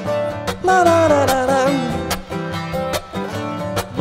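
Acoustic guitar strummed in a steady rhythm, with a singing voice holding a long falling line from about a second in.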